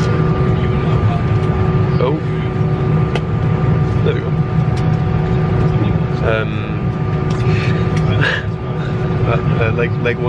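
Airliner cabin noise: a steady low rumble with a constant hum of several tones from the aircraft's engines and air system, with faint passenger voices now and then.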